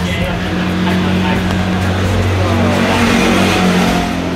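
A motor vehicle's engine running steadily, a low even hum that shifts pitch about halfway through, with background music underneath.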